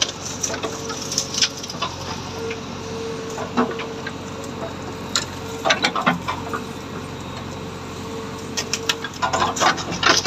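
JCB 3DX backhoe loader's diesel engine running steadily under load, with a steady whine that comes and goes, while the backhoe bucket pushes through thorny scrub. Branches crack and snap throughout, in a dense run near the end.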